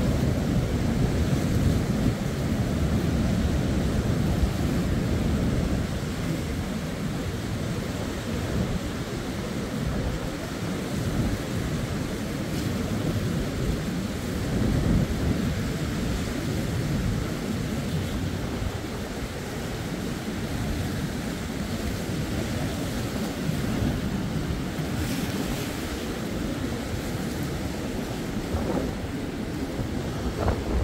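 Sea waves washing against a stepped concrete sea wall, a steady surging rush that swells and eases, with wind buffeting the microphone.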